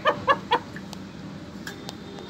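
Hill myna giving three short calls in quick succession in the first half-second, then a few faint clicks.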